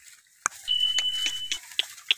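A steady high electronic beep lasting under a second, about half a second in, over a run of short dry crunches about three a second.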